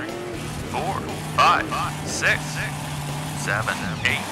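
Cartoon monster truck engine sound effect, a steady low drone, overlaid with several short rising-and-falling vocal exclamations.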